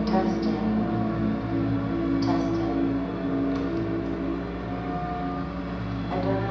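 Live electronic music through a PA speaker: layered tones held long and overlapping, over a steady low hum, with a couple of faint clicks.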